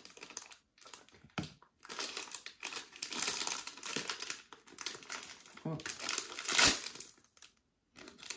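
Crinkling and rustling of a Sonny Angel blind-box foil wrapper as it is handled and torn open, with irregular crackles and one sharper crackle late on.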